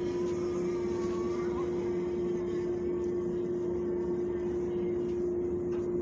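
A steady machine hum with one constant droning tone under a faint even rush, holding level throughout.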